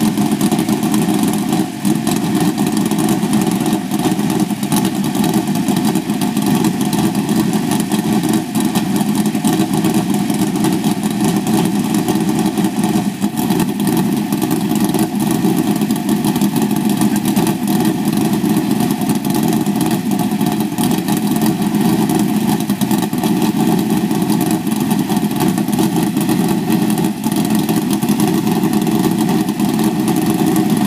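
Asphalt modified race car's V8 engine idling, loud and steady.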